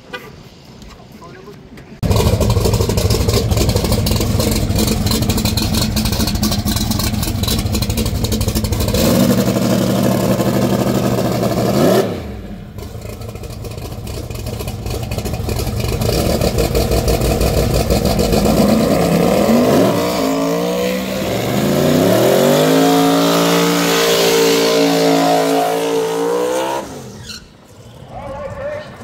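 Loud drag-race car engine running hard at the strip, revs rising and falling. Near the end the engine pitch climbs steeply and holds high as the car accelerates away.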